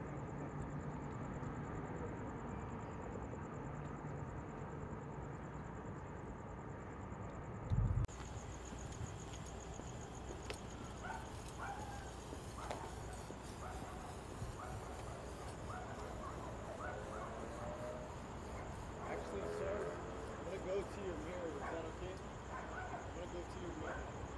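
Indistinct distant voices, with a steady low hum in the first part and a single thump about eight seconds in, after which the background changes abruptly.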